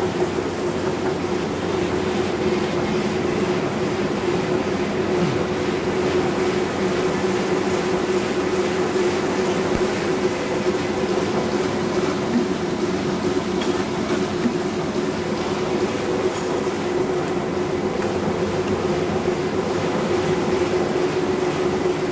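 Offset printing press running steadily: a continuous mechanical rumble with a constant hum.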